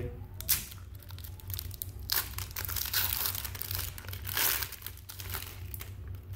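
A 1997-98 Topps basketball card pack's silvery wrapper is torn open and crinkled, and the cards are pulled out, in a string of irregular rustling bursts; the loudest come about two seconds in and again about four and a half seconds in.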